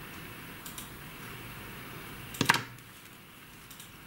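Faint light clicks of a crochet hook and knitting needles working a stitch, over a steady background hiss. One short, much louder sound cuts in about two and a half seconds in.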